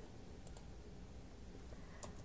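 Quiet room tone with a couple of faint computer clicks, one about half a second in and one near the end, as the cursor is sent to the end of a document.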